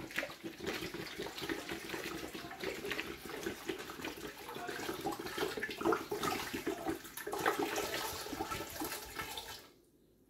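Water pouring from an upturned large plastic bottle into a stainless steel pressure cooker, splashing in the pot; the pouring stops suddenly just before the end.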